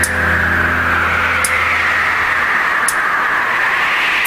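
A loud, steady rushing whoosh of noise in the instrumental intro of a film song, over a low held note that fades out a little past halfway. Two faint ticks sound in the middle.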